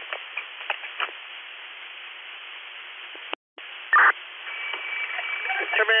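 Two-way radio channel between transmissions: steady radio hiss with faint clicks. About three and a half seconds in it drops out briefly. A short burst follows as the next transmission keys up, then a faint steady whistle, and a radio voice begins near the end.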